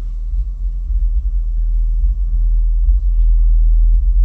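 Steady low rumble with no speech, slowly growing louder.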